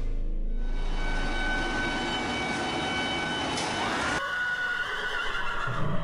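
Horse whinny sound effect: one long call at a held pitch that breaks off about four seconds in.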